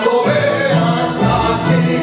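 Zarzuela ensemble singing with orchestra: several voices hold sustained notes together over string accompaniment, in a live stage performance.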